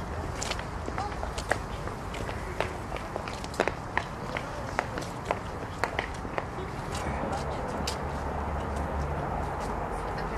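Footsteps on paved stone: a run of sharp, irregular steps over a low steady rumble.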